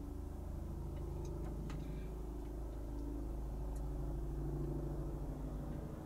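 Car engine idling, heard from inside the cabin as a steady low hum, with a few faint clicks in the first few seconds.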